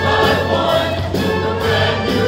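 A large mixed show choir singing in harmony.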